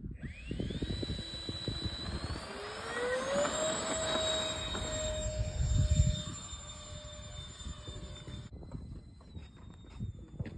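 RC model airplane's motor whining and rising in pitch as it throttles up for a takeoff run, then holding a steady high whine, with wind buffeting the microphone. The loud whine cuts off abruptly about eight and a half seconds in, and a fainter steady whine carries on.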